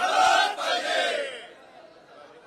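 A crowd of male protesters shouting a slogan together, loud for about a second and a half and then dying away.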